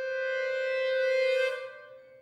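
A violin holding one long bowed note that swells to a peak and then fades away.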